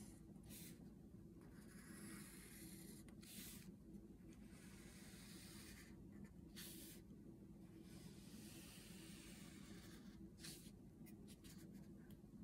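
Faint scratching of a graphite pencil on paper, drawing a few long curved strokes with pauses between them.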